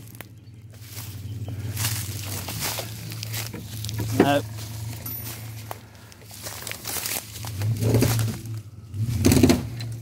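A van's engine running steadily as it takes up a tow strap to pull a stuck car out of a field, getting louder toward the end as it pulls harder.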